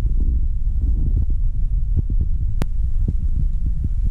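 A loud, steady low rumble with small faint ticks and one sharp click a little past the middle.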